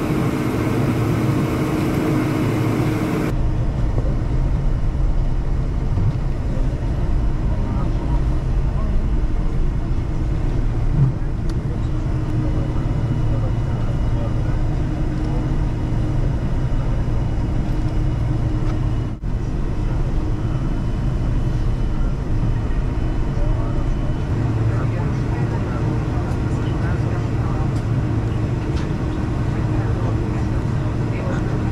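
Cabin noise inside a Boeing 747-400 taxiing on the ground: a steady low rumble of the engines and airframe. The sound shifts abruptly a few seconds in and drops out for a moment just past the middle, where the footage is cut.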